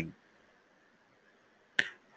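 The end of a man's narration, then near silence, broken near the end by one short, sharp mouth click just before he speaks again.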